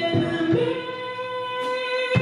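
Female singer holding one long sung note into a microphone with the band almost silent beneath her, after a couple of short band hits at the start.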